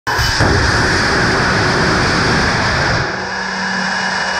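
Sierra Nevada Corp. Vortex hydrogen and liquid-oxygen rocket engine firing on a test stand: a loud, steady roar of exhaust. About three seconds in, the deep rumble drops away, leaving a hiss and a steady low hum.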